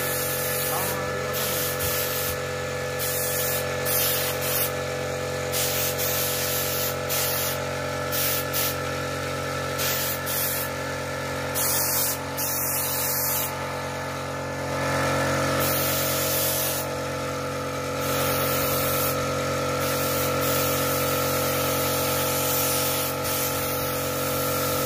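Air spray gun hissing in repeated bursts, on and off every second or so, as the trigger is worked to spray PU polish onto carved wood. A steady hum runs underneath throughout.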